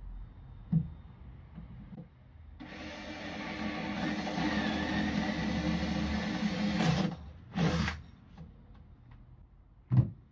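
Cordless drill boring a hole into OSB board: a few light knocks, then the drill runs for about four seconds from about two and a half seconds in, with a short second burst near the eight-second mark. A sharp knock near the end.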